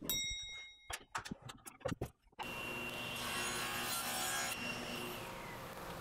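A few sharp clicks, then a table saw running from about two and a half seconds in. Its sound brightens through the middle as it makes a bevel cut in a walnut board.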